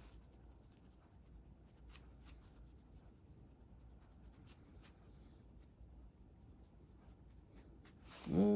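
Faint scratching of a comb against the scalp through hair, with a few light ticks, barely above room tone.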